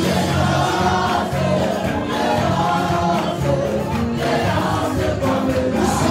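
A gospel choir singing with instrumental backing, the voices holding long notes over a steady bass line.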